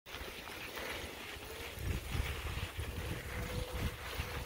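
Wind buffeting the microphone and tyre rumble over a dirt trail from a moving e-bike, louder from about two seconds in, over the faint steady whine of its Tongsheng TSDZ2 mid-drive motor.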